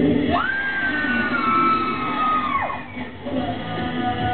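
Male pop singer belting one long high note into a handheld microphone during a live rock-pop song. The voice slides up to the note, holds it about two seconds while sagging slightly in pitch, then falls off, with the band behind him.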